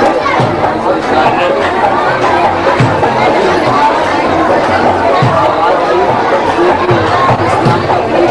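Several men talking over one another in a small crowded room, an overlapping chatter of voices.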